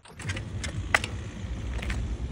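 Mountain bike being hopped on concrete during trials moves: sharp knocks and rattles from tyres, chain and frame, the loudest about a second in, over a steady low rumble.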